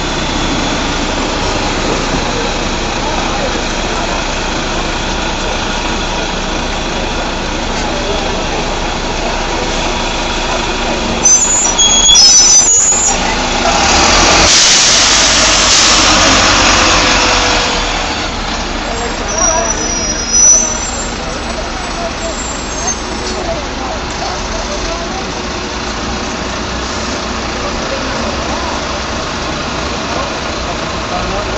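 Double-decker bus's diesel engine running steadily. About eleven seconds in come a few short high squeaks, then a loud hiss of released air lasting about four seconds as the air brakes let go, and the engine runs on as the bus pulls away.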